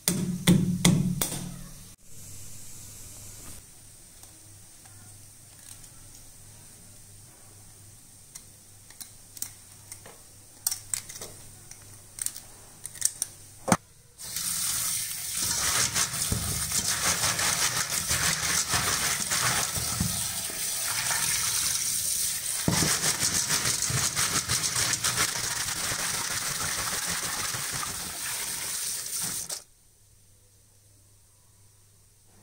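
A wooden pounder thumping on crab legs on a stone counter at the start, then scattered clicks of crab shell being handled. From about halfway, tap water runs hard into a stainless steel bowl in a sink while crab pieces are washed by hand, a steady rush that cuts off just before the end.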